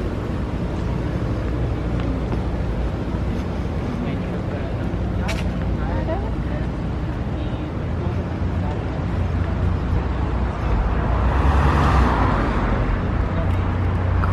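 Steady low engine rumble of a tour vehicle moving slowly along a street, with traffic noise. A louder swell of road noise rises and fades about eleven to thirteen seconds in.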